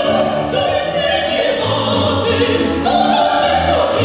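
Female soloists singing a song to Ukrainian folk lyrics in a trained, operatic style, accompanied by an orchestra of folk instruments whose plucked strings keep a steady rhythm under the voices.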